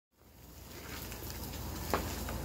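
Background noise fading in: a steady low hum under a hiss, with one short sharp sound near the end.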